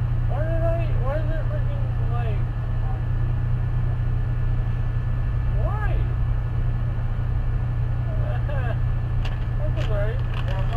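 Steady low rumble of an idling vehicle engine, with faint, indistinct voices in the first couple of seconds and again briefly around six seconds in.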